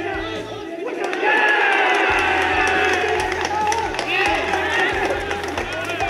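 Group of baseball players shouting and cheering at the game's final out, loudest from about a second in, over background music.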